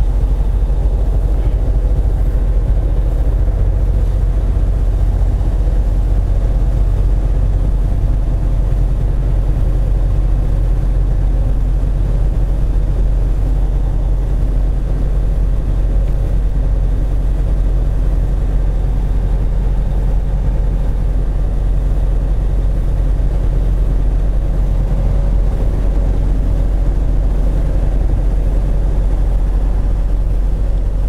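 Semi truck's diesel engine running steadily at road speed, with tyre and road noise, heard from inside the cab as a constant low rumble.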